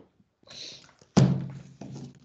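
A short hiss, then a loud thunk a little over a second in that dies away over about half a second, followed by a softer knock near the end.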